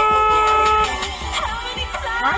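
A car horn sounding one steady honk about a second long, louder than the background R&B music that plays throughout, as a prompt to a car that sat at a green light.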